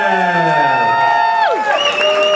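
Ring announcer's voice over the PA, stretching the boxer's name into one long held call that ends about a second and a half in, over crowd cheering and whoops.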